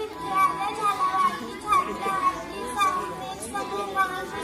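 Young girls singing a song together, with held notes that glide up and down, over a steady high tone that runs underneath.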